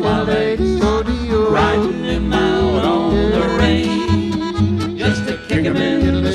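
A live western band playing an instrumental break of a country song: archtop guitar chords over a steady bass, with a melody line on top.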